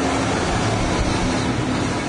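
Loud, steady rushing noise with a low hum under it.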